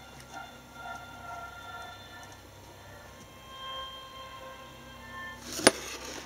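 A homemade FET medium-wave radio receiver playing a broadcast station faintly through its small audio amplifier, with music coming through. A single sharp click shortly before the end.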